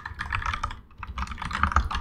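Typing on a computer keyboard: a fast run of keystrokes with a brief pause midway.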